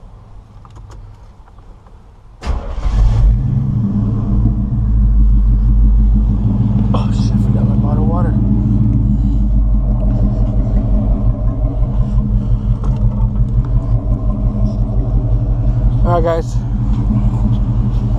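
Chevrolet C10 pickup's engine starting up about two and a half seconds in, then idling steadily with a low, even exhaust rumble.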